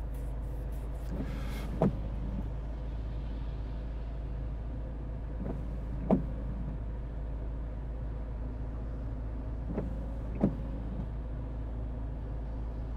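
Car windshield wipers on intermittent, heard from inside the cabin: three sweeps about four seconds apart, each a brief whir ending in a short thump, over the steady low drone of the car's cabin.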